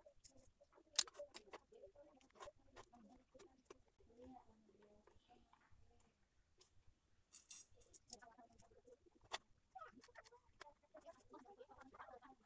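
Faint clicks, taps and scrapes of a clothes iron's plastic housing being handled and fitted back onto its soleplate, with a sharper click about a second in.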